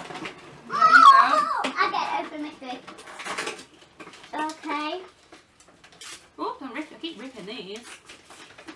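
Children's voices talking and exclaiming in bursts, with light clicks and clatter of small plastic toys and packaging being handled between them.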